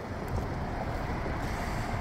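Steady outdoor background noise, a low even hum of distant road traffic.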